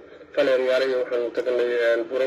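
A woman's voice speaking, starting after a short pause at the very beginning.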